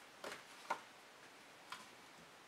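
A few faint, short ticks and light taps from small painted canvases being handled on a metal display rack.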